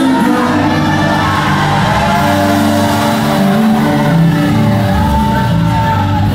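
Live Portuguese gospel worship song: a man singing loudly into a handheld microphone over amplified musical accompaniment.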